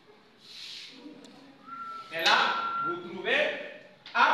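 Indistinct voices that no words could be made out from, with a brief hiss about half a second in and a steady whistle-like tone in the middle.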